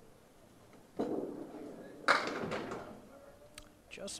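A thrown candlepin bowling ball lands on the wooden lane about a second in and rolls. About a second later it hits the pins with a sharp crack, the loudest sound, followed by a short clatter of falling wooden pins. The ball misses the pin it was aimed at, leaving several pins standing.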